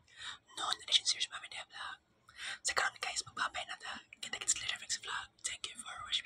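A man speaking in a whisper, his words unclear, in short phrases with brief pauses.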